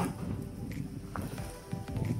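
Background music with steady held tones, and a faint single knock about a second in.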